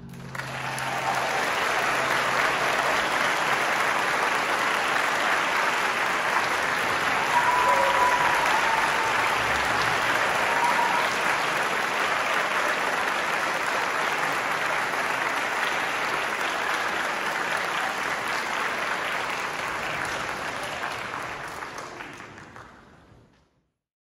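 Audience applauding at the close of a band piece, steady for about twenty seconds, then fading out near the end.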